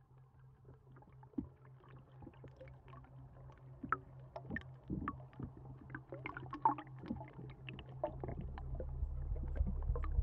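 A faint steady low hum with scattered clicks and crackles throughout. A deep rumble swells in about eight seconds in and grows louder to the end.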